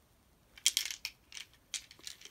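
A coin clinking and rattling inside a toy coin bank: a series of short sharp clicks starting about half a second in.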